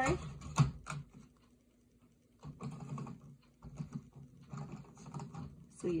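A tray of coloured pencils being handled in its metal tin: a couple of sharp clicks in the first second, a short pause, then a run of light, irregular taps and clicks.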